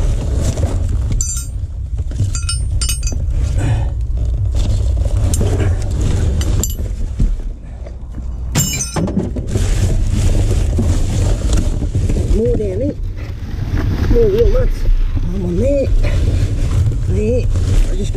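Rummaging through rubbish inside a dumpster: plastic and paper rustling, with a few sharp metal clinks in the first half, over a steady low rumble. In the second half a voice hums with rising and falling pitch.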